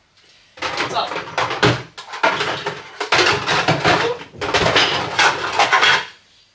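Plastic food containers and dishes clattering and knocking as they are stacked into a kitchen cupboard while a dishwasher is unloaded, a dense run of rattles and knocks starting about half a second in.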